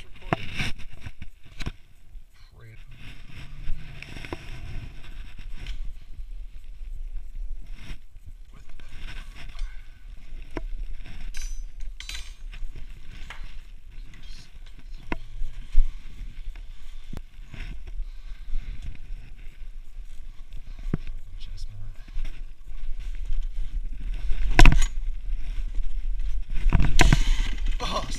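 Handling noise on a chest-mounted camera while a dirt bike is moved about: rustling and irregular clicks and knocks over a low rumble, with two louder thumps near the end.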